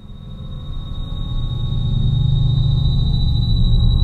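Stage amplifiers droning with a steady high-pitched feedback whine over a low hum, fading in and growing louder over the first two seconds.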